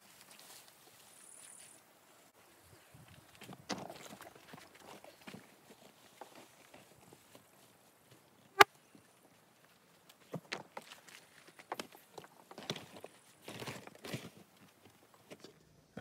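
Scattered rustling, scraping and knocking of gear being packed: a tarp being handled and a plastic storage tote being loaded into the back of an SUV. One sharp knock comes a little past the middle.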